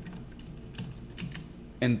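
Computer keyboard keys clicking as code is typed: a handful of separate keystrokes at uneven intervals, fairly soft.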